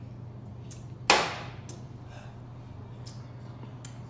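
A single sharp knock about a second in, fading over about half a second, with a few faint clicks and a steady low hum.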